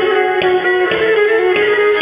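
Pontic lyra (kemençe) playing a lively folk tune: a bowed melody over a steady drone, with sharp rhythmic accents about twice a second.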